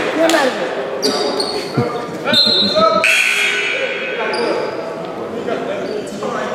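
Basketball bouncing on a hardwood gym floor in a game, with several impacts, players' voices and the echo of a large hall.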